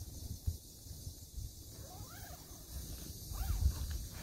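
Wind buffeting the microphone in low rumbles, with a stronger surge near the end, and a couple of faint rising-and-falling chirps in the middle.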